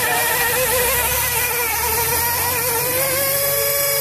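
Radio-controlled model pickup truck pulling a weighted sled, its motor running under load with a high-pitched buzzing whine that wavers slightly in pitch and cuts off suddenly at the end.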